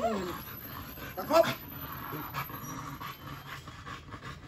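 A dog panting.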